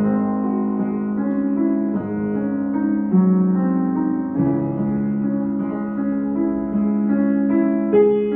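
Upright piano played slowly: held chords, the bass note changing every second or two.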